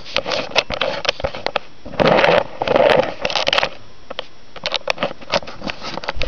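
Handling noise: a run of small clicks and knocks, with two louder bursts of rustling scrape about two and three seconds in.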